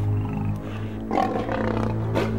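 A lion growling, a rough call that starts about a second in and lasts most of a second, over low sustained film-score music.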